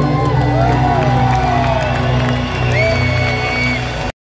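Live rock band over a concert PA holding steady sustained tones, with the crowd cheering and whooping over the music in rising and falling calls.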